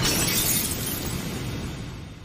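Anime sound effect of a barrier shattering like breaking glass: a noisy crash that fades away.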